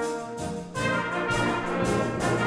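Solo trombone playing a note in a concertino, then the full symphonic wind band comes in with strong bass about three-quarters of a second in and carries on.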